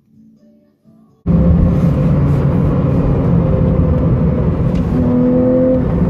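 Engine and road noise of a Porsche sports car at speed, heard from inside the cabin, starting suddenly about a second in. The engine note climbs slightly near the end.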